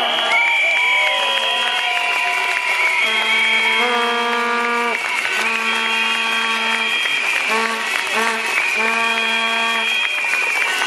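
Protesters' noisemakers answering the speech: several long, steady horn notes, the lowest around one pitch, overlapping with higher whistle-like tones. The blasts stop and restart every second or two.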